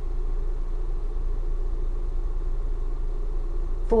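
Ford Bronco's engine idling, heard from inside the cabin as a steady low hum.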